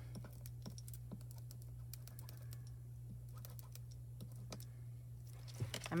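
Faint, irregular light clicks and taps as the tip of a heated fuse tool is worked over foil-covered card on a metal mat, with a steady low hum underneath.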